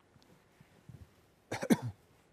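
A man coughing: a short cough of a few quick bursts near the end, after faint small noises about a second in.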